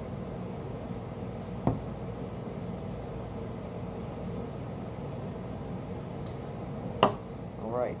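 Beer being poured from a can into a glass against a steady background hum, with two sharp knocks, one about two seconds in and a louder one near the end.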